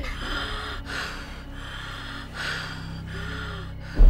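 A woman breathing in repeated laboured gasps, about five or six breaths with faint voiced catches in a couple of them, over a steady low hum.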